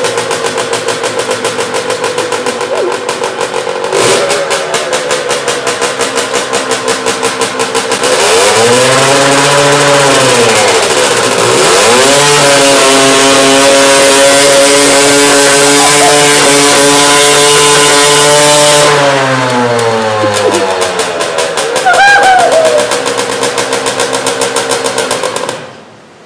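Derbi Senda dirt bike engine doing a burnout. It runs at lower revs for about eight seconds, then revs up and holds high while the rear tyre spins and smokes on the floor. The revs drop around twenty seconds in and the engine cuts off abruptly near the end.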